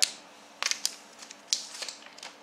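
Foil trading-card pack crinkling and being torn open by hand: short, sharp crackly rustles, a cluster about half a second in and another about a second and a half in.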